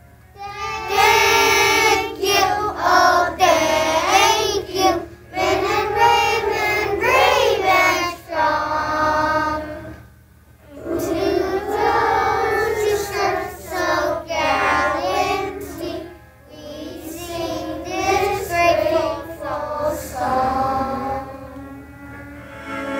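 A group of young children singing a song together, in phrases with short breaks about ten and sixteen seconds in.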